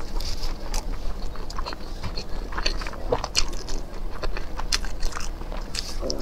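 Close-miked eating: a person chewing and biting into grilled, spice-coated skewered food, heard as many irregular short chewing clicks, the loudest about three and a half seconds in.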